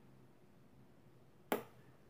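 Quiet room tone broken by a single sharp click about one and a half seconds in, which dies away quickly.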